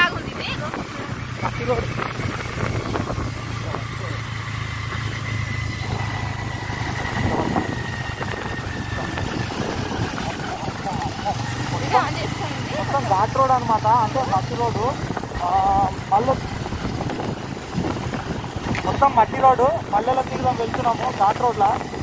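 Motorcycle riding along with wind buffeting the microphone; the engine's low hum is steady for stretches and fades in and out. Voices talk over it near the middle and toward the end.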